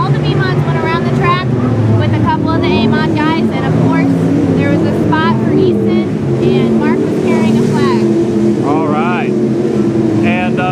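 A young woman talking over the steady drone of race car engines running in the background.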